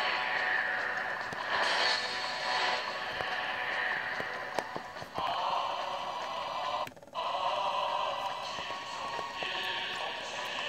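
North Korean propaganda music played as an MP3 from a data CD through a TV's small speaker, thin with no bass. The sound cuts out briefly about seven seconds in.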